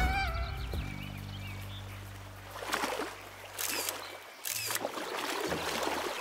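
Two camera shutter clicks about a second apart, a little past halfway, over soft background music with low held notes.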